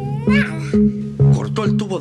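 Background music with low held notes changing about every half second, under voices. There is a short, high rising vocal sound just after the start.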